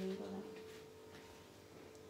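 A voice trailing off in the first half second, then quiet room tone with a faint steady hum.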